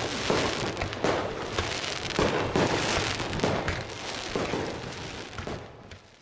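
A dense run of irregular bangs and crackles that fades out near the end.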